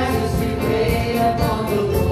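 A church worship team of mixed men's and women's voices singing a gospel worship song into microphones, with instrumental accompaniment and a steady beat ticking about four times a second.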